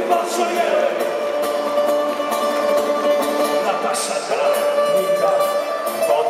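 Live music of strummed guitars, including an acoustic guitar, in a steady strummed rhythm, with voices mixed in.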